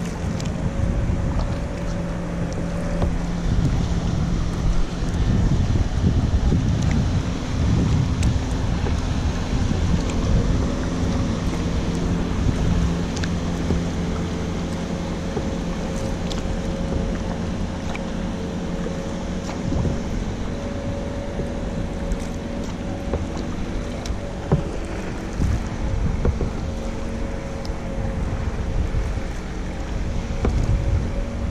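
Wind buffeting the microphone over water lapping at a kayak as it is paddled, with a distant motorboat engine giving a faint, steady hum.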